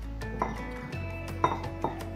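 A metal spoon clinks against the bowls three times as boiled sweet corn kernels are scooped from a ceramic bowl into a glass bowl, over steady background music.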